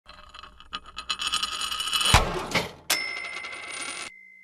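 Animated-logo intro sting made of sound effects: a quickening run of bright metallic clicks and chimes, a sharp hit about two seconds in, then another hit near three seconds that leaves a single high tone ringing.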